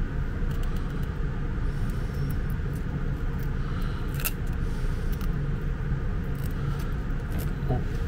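A steady low background rumble, with faint clicks from a plastic screw cap being twisted off a tube of grease; one sharper click comes about four seconds in.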